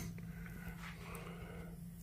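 Quiet pause: faint room tone with a steady low hum.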